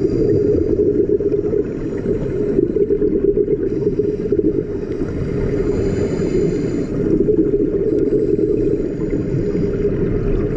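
Steady, dense low rumble of underwater ambient noise picked up by a camera in an underwater housing, with a faint high hiss that fades in and out every few seconds.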